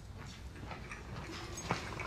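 Faint footsteps and porcelain coffee cups clinking on their saucers as they are carried, with a sharper click near the end.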